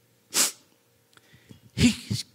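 A single short, sharp breath noise from a man's mouth or nose about half a second in, followed by a pause and then the start of his next word near the end.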